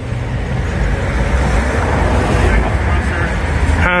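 Loud, steady rumble of road traffic, a heavy vehicle running close by, loud enough to drown out conversation. A short spoken "Huh?" cuts through it near the end.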